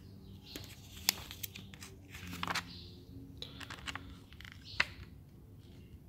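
Paper pages of a printed instruction manual being handled and turned: soft rustling and crinkling with a few sharp paper ticks, the sharpest near the end.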